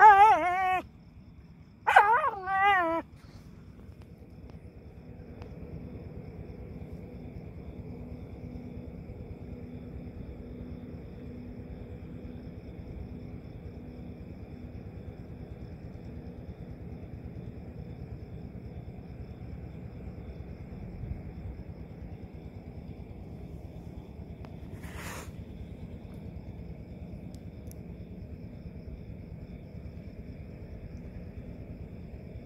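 A dog gives two short, high, wavering whimpers at the start and about two seconds in while worrying a hedgehog curled into a spiny ball; after that there is only a faint steady background with a single click about 25 seconds in.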